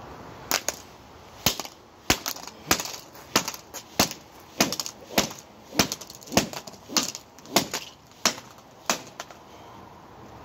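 A wooden-handled hammer smashing a Samsung Galaxy smartphone lying on concrete: about fifteen sharp blows in a steady rhythm, roughly one every 0.6 seconds, stopping near the end.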